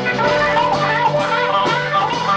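Live blues-rock band playing: an electric guitar lead with wavering, bending notes over a stepping bass line and drums.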